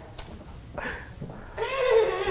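A person's voice: faint murmurs, then from about a second and a half in a drawn-out, wavering high-pitched vocal exclamation.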